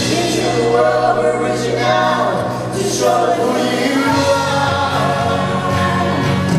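Live worship band playing a gospel song: several voices singing together over acoustic guitar and electric bass.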